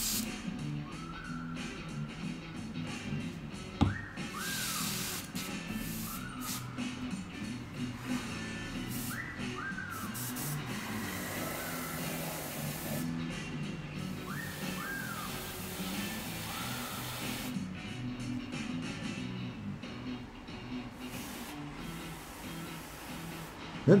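Airbrush spraying paint in several short hisses, with one longer hiss in the middle, over steady background music. A single sharp knock comes just before four seconds in.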